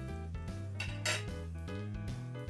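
A single clink of metal cutlery against a ceramic plate about a second in, over background music with sustained notes.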